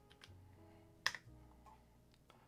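Quiet background music with a few soft computer-keyboard clicks, one sharper click about a second in.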